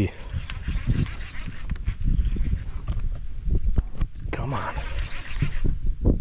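Wind buffeting the microphone in an uneven low rumble, with irregular knocks and clicks from handling a baitcasting rod and reel during a fish fight. A brief voice sound comes about two-thirds of the way in.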